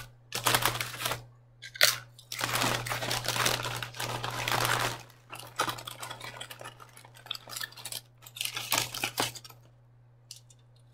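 Aluminium foil food wrapper crinkling and rustling as it is handled and peeled back, in irregular bursts. The longest, loudest stretch comes about two to five seconds in, with shorter crinkles after it.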